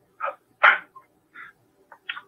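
A dog barking: two short barks in the first second, the second louder, followed by a few fainter short sounds.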